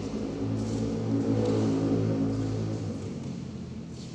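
A low, steady engine hum that swells about half a second in and fades away around three seconds in, like a motor vehicle passing by.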